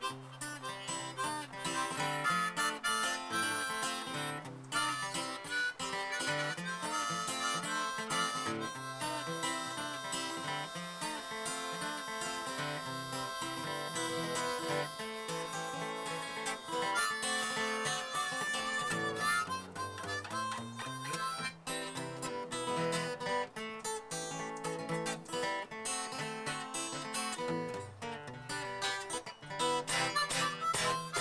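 Harmonica and acoustic guitar playing a blues tune together, the harmonica holding long notes in the middle stretch over plucked guitar.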